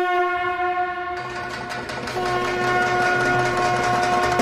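Intro music led by a long blown conch shell (shankh) tone. It breaks off about a second in and sounds again a second later, while rattling, clicking percussion and a low drone come in.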